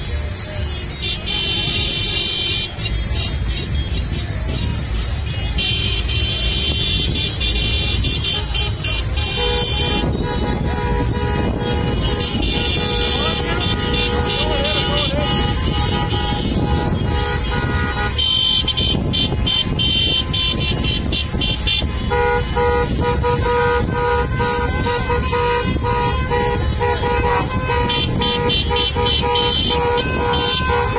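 Many car horns honking over the low rumble of slow-moving traffic, some in short toots and one held in a long unbroken blast through the last several seconds.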